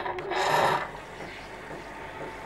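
Nespresso capsule machine with built-in milk frother starting up: a click, then a burst of mechanical rattling about half a second long, settling into a steady hum.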